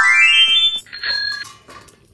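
A loud, high-pitched call that starts suddenly and rises in pitch for most of a second, followed by a second, shorter and steadier high call.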